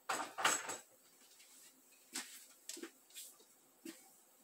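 A short rush of noise lasting under a second, then four light, separate clinks of kitchenware being handled.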